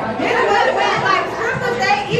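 Several women talking over one another in overlapping chatter, in a large room.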